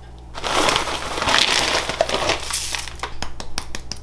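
Dry cornflakes crackling and crunching as they are handled into a plastic food container: a dense crunch for about two and a half seconds, then a string of separate small crackles.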